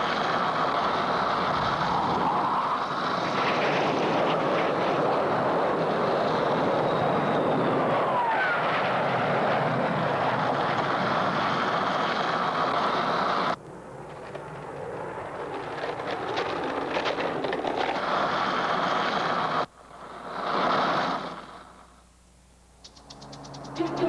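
Skateboard wheels rolling over pavement in a steady rush that cuts off abruptly about halfway through. The rolling noise then builds again and stops suddenly, and a short rising-and-falling whoosh passes near the end.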